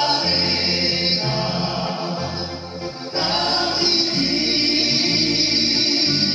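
Live pop-folk song: a male lead singer on a handheld microphone with backing voices, over a band with a steady bass line that changes note about once a second.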